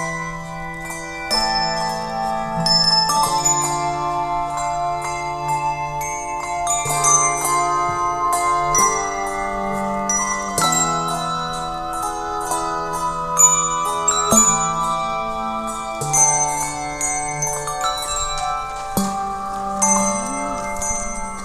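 English handbell choir playing a slow piece: struck handbells ringing on in chords, each new chord sounding every second or two over sustained lower bells.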